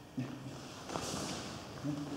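Soft movement noise of bare feet shifting on a gym mat and cloth rustling, with a faint knock about halfway through. A short murmured voice sound comes just after the start and another near the end.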